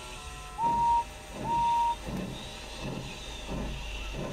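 Steam locomotive whistle giving two short toots, the second a little longer, followed by slow, evenly spaced chuffs as the engine starts pulling away.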